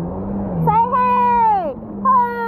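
A woman's long, high-pitched call, held for about a second and falling away at the end, as she shouts out to someone far off.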